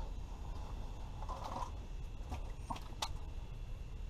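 Faint room noise inside an ice-fishing shack, a steady low rumble and hiss, with a few light clicks from handling a small ice-fishing rod and reel, and a brief faint muffled sound about a second and a half in.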